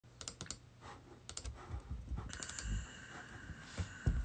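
Faint, scattered clicks and taps of a computer keyboard being typed on.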